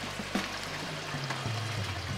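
Water trickling steadily into a plastic water tank, an even hiss, with a low steady hum beneath.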